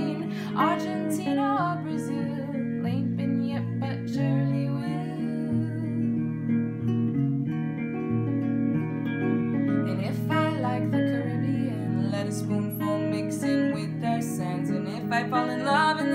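Two guitars playing an instrumental passage of a folk song, picked and strummed chords held steadily, with a few brief wordless vocal phrases near the start, about ten seconds in, and near the end.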